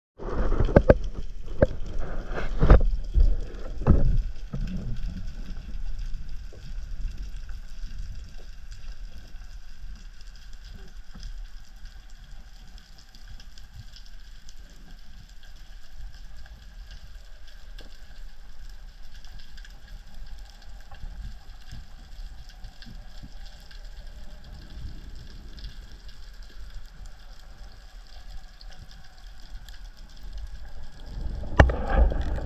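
Underwater sound through a GoPro's waterproof housing: a few heavy muffled thumps and rushes of moving water in the first four seconds, then a quieter, steady low rumble of water with faint steady high tones.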